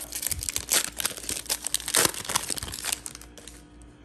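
Foil wrapper of a Panini Prizm soccer card pack being torn open and crinkled in the hands, a dense crackling that is loudest about one and two seconds in and dies down after about three seconds.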